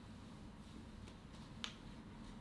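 A single short, sharp click about one and a half seconds in, with a fainter tick just before it, over a low steady room hum.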